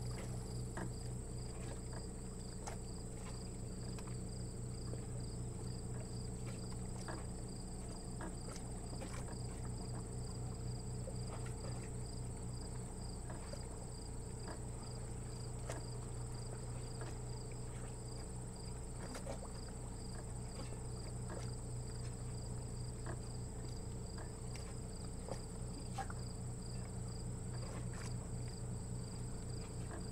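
Insects chirping steadily outdoors: a high chirp pulsing evenly over a continuous higher whine. Underneath is a low steady hum and a few scattered faint ticks.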